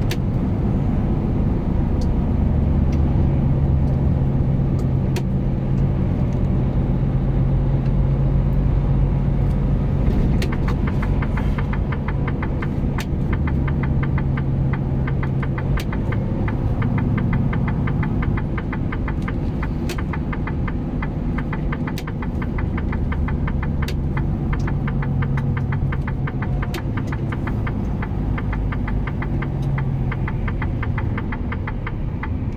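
Truck engine running steadily at road speed, heard from inside the cab, with a low drone and road noise. From about a third of the way in, a fast, light rattle or ticking runs alongside it, with a few sharper clicks now and then.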